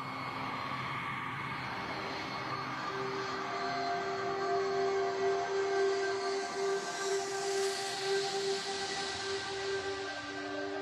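Airplane engine noise, a rushing hiss that swells and is loudest about seven to nine seconds in, with a steady held note beneath it.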